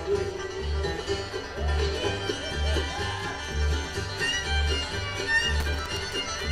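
Live bluegrass band playing an instrumental passage: a sliding lead line over mandolin, with upright bass notes landing about once a second.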